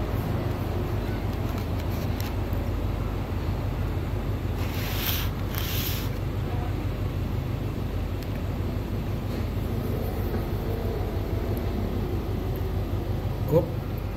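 Steady low background rumble, with two brief hissy rustles about five seconds in.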